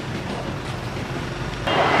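A vehicle engine running steadily, heard as a low hum under steady street noise.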